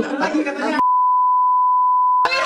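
A steady, high-pitched censor bleep, a single pure tone, starts suddenly about a second in and blanks out all other sound, masking a remark.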